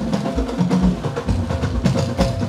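Live band music driven by drums and percussion: a quick, steady run of drum strokes with a few held low notes under them.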